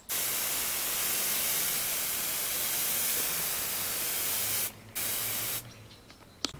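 Hand-held garden sprayer misting liquid through its brass nozzle: a long steady hiss of about four and a half seconds, a brief break, then a second short burst of under a second.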